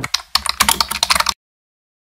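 Rapid key-typing sound effect: a quick run of sharp key clicks that cuts off suddenly after a little more than a second.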